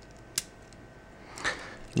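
A single sharp metallic click from a Gerber 600 multitool being worked by hand, about half a second in, against a quiet room.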